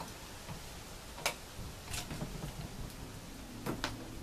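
A few light clicks and taps, one about a second in, another at two seconds and a quick pair near the end, as the electrical cords and controller on a homemade trash-can smoker are handled, over a low steady background rumble.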